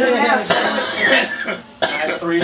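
A person coughs, one sudden noisy burst about half a second in, with talk around it.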